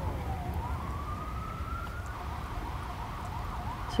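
A faint siren wailing: one tone falls slowly in pitch, rises again over about two seconds, then wavers more faintly, over a steady low rumble.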